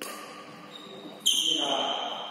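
Sounds of a badminton doubles game on a wooden hall floor. There is a sudden sound at the start and a louder, sharp one just over a second in, each followed by a high ringing tone that fades. A short burst of a voice comes near the end.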